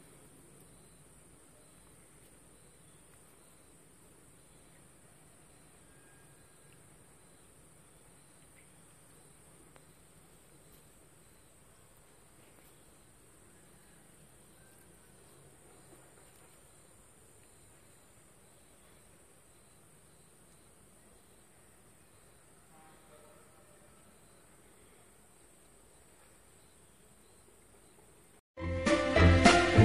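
Near silence with a faint, steady, high-pitched insect trill, crickets or similar, droning on without a break.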